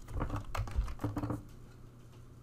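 Typing on a computer keyboard: a quick run of keystrokes over the first second and a half, then it goes quiet.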